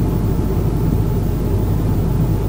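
Steady low rumble inside the cabin of a jet airliner in cruise flight, the engines and rushing air heard through the fuselage.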